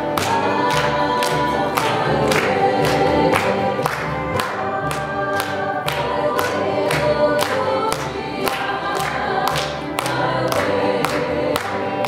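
A bluegrass-style string band playing: several voices sing together over fiddle, acoustic guitar, banjo and upright bass, with a steady picked and strummed beat of about two to three strokes a second.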